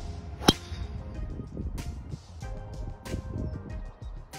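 Background music with a steady beat, cut by one sharp, loud click about half a second in: a golf driver striking the ball off the tee.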